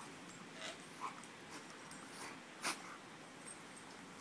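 Two dogs play-fighting, with a few short, sharp mouth and breath noises as one mouths the other. The loudest comes a little past halfway.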